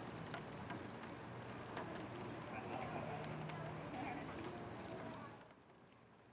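Indistinct chatter of people over a steady outdoor background, with scattered clicks and a few short high-pitched chirps. The background drops to a much quieter level about five seconds in.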